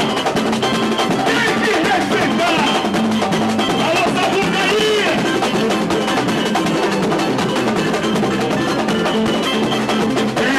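A samba school bateria playing samba on surdo bass drums and other percussion, with a man singing a warm-up samba (samba de esquenta) into a microphone over the drums.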